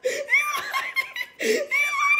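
A woman laughing in repeated bursts, broken by high-pitched squeals, with one long held squeal in the second half.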